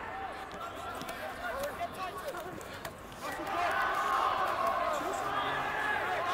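Many voices shouting and calling at once on a rugby pitch: players' calls from around the ruck, overlapping. The shouting grows louder and denser about three seconds in.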